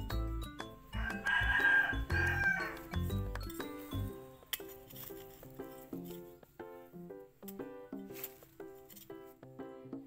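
Background music with a steady run of short notes, and a rooster crowing once for about two seconds, starting about a second in.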